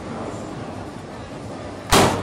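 Steady arcade room noise, then near the end a single loud, sharp impact: a punch landing on an arcade boxing machine's strike pad.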